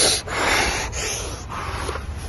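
A person panting hard right against the microphone, about two breaths a second, getting softer in the second half.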